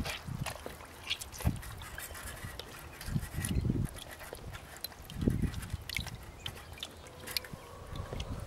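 Hands squeezing and kneading boiled potatoes inside a wet cotton sock under water in a plastic bucket: soft squelching and small splashes and drips, with two louder squelches, one a little past three seconds and one around five seconds.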